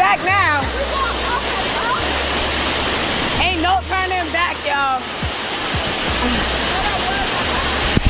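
Waterfall water rushing and splashing over rocks close around the microphone, a steady roar of noise. Voices call out briefly at the start and again about three and a half seconds in.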